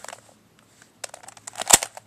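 ShengShou 3x3 speed cube being turned by hand: a quiet first second, then a run of short plastic clicks and clacks as the layers turn, the loudest near the end.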